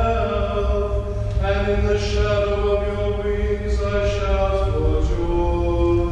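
A cantor singing the responsorial psalm in slow, chant-like phrases, each note held for a second or more before stepping to the next.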